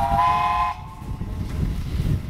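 A Stroudley Terrier tank engine's chime whistle sounding a short blast of several notes at once, cutting off under a second in, over the steady low rumble of the train running.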